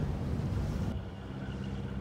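Low, steady rumble of a cruise boat under way with its engine running. A steady low hum comes in about halfway through.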